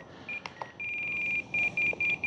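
Spektrum NX8 radio transmitter beeping as its settings roller is pressed and turned: one short beep, a longer beep, then quick short beeps about five a second as the rudder rate is stepped down toward 90%. Faint clicks from the roller come in between.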